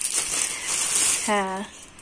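A thin plastic bag crinkling and foil-wrapped chocolate sweets rustling as a hand rummages through them. It stops about a second and a half in.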